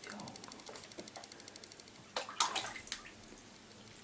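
Water splashing in a bathtub as a cat swims, with a short louder burst of splashing about two seconds in.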